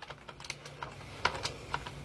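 A run of irregular light clicks and taps, a few a second, over a faint steady low hum.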